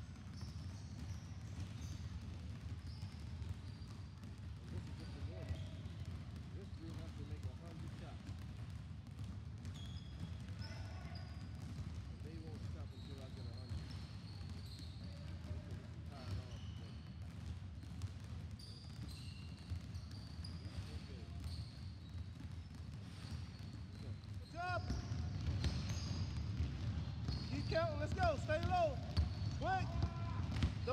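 Many basketballs being dribbled at once on a sports hall's wooden floor, a steady jumble of overlapping bounces that grows louder for the last five seconds.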